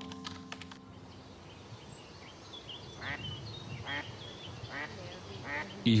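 Music dying away in the first second, then outdoor ambience with a duck quacking about four times in the second half and small birds chirping.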